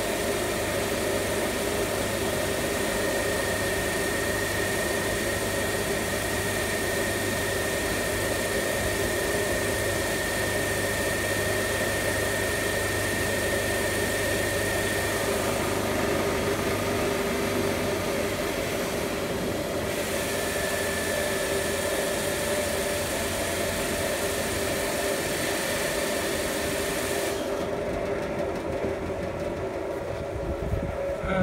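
A 1400-watt electric water blaster running, its jet driving a turbine and axial flux generator at full speed: a steady hiss and hum with a high whine. Near the end the hiss in the treble cuts out and the generator's output begins to fall.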